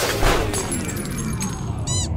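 Logo sting sound effect: a sudden crash-like hit about a quarter second in that dies away over the next second, with high ringing tones over it, then a few quick sweeping chirps near the end.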